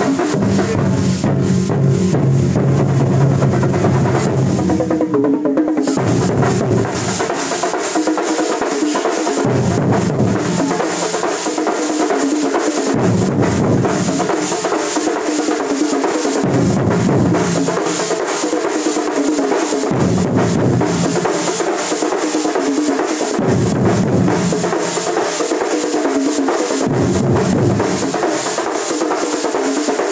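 Street drum troupe: many shoulder-slung drums beaten with wooden sticks in a loud, fast, dense rhythm. From about seven seconds in, the deep low strokes swell and drop away about every three to four seconds.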